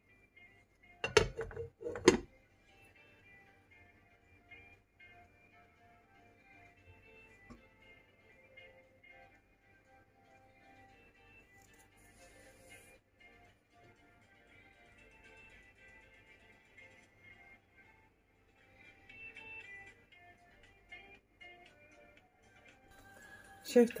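Glass lid set onto a frying pan: two sharp clinks about a second apart near the start. After that only faint background sound with quiet music.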